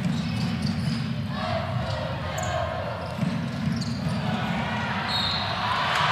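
Live game sound from a basketball arena: a basketball bouncing on the hardwood court over a steady crowd murmur.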